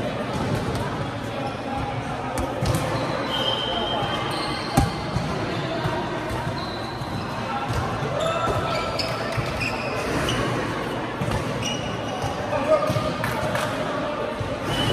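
Light volleyball rally in a sports hall: hands striking the soft plastic ball, with the sharpest hit about five seconds in and another near the end, short high squeaks from shoes on the court floor, and players' voices calling, all echoing in the hall.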